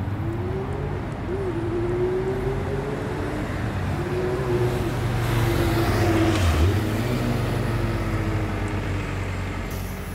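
City street traffic: motor vehicle engines running with a wavering hum over a steady traffic noise, loudest as a vehicle passes close about six to seven seconds in.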